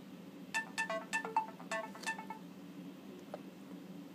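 A short melodic notification chime from an Android device announcing an incoming message: a quick run of about eight bright notes lasting about two seconds. The owner takes it to be his Nexus 7 tablet getting the message.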